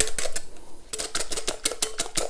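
Wire balloon whisk beating egg, milk and flour batter in a glass bowl, the wires clicking rapidly against the glass at about ten taps a second, with a brief pause about half a second in.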